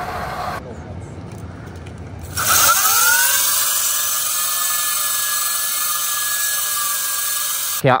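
Sur-Ron electric dirt bike doing a burnout: about two seconds in, its upgraded motor whines up sharply to a high, steady pitch while the spinning rear tyre hisses loudly on the pavement, holding until near the end.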